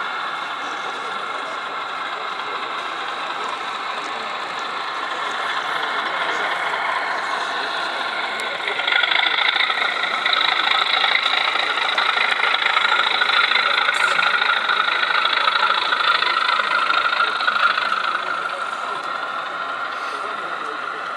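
Model Class 37 diesel locomotive 37114 running, its diesel engine sound played through a small speaker, louder from about nine seconds in as it passes close.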